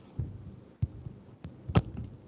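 About four soft, short knocks spread over two seconds, the last one near the end the loudest and sharpest, over faint background hiss.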